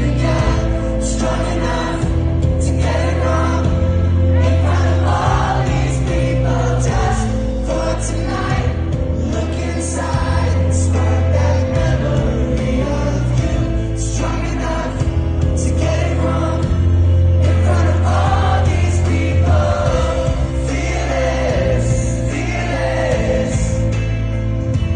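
Live pop-rock band playing loudly, recorded from within the audience: a heavy bass line changing note every couple of seconds under singing by many voices.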